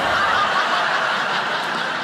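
Audience laughing, swelling up right at the start and easing off a little towards the end.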